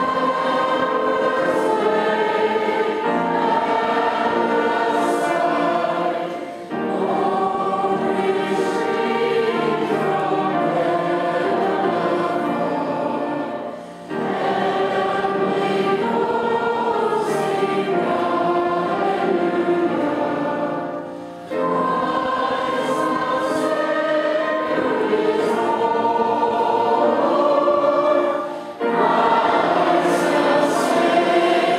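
Many voices singing a hymn together in long held phrases of about seven seconds each, with brief breaks between the phrases.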